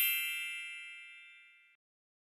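A bright, bell-like chime sound effect made of several ringing tones, fading steadily and cutting off about three-quarters of the way through.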